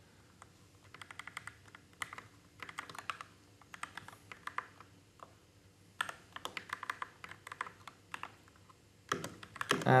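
Typing on a computer keyboard: quick runs of key clicks in two bursts, with a pause of about a second in between.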